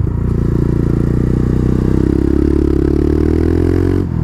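Motorcycle engine under acceleration, its pitch rising steadily as the revs climb. The sound is muffled, with little above a low rumble.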